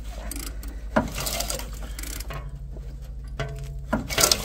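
Rusty, dirt-caked accessory drive belt and pulleys on a long-abandoned Lincoln Continental's 460 V8 turning slowly as the engine is rotated, a sign the engine is not seized. There is a sharp click about a second in.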